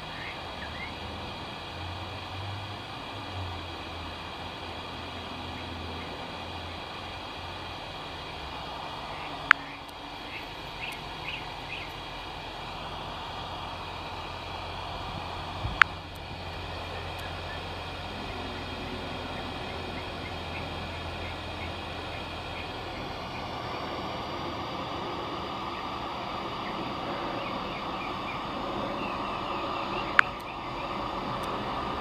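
Steady low hum over background noise, broken by two sharp clicks about six seconds apart, with a few faint high chirps.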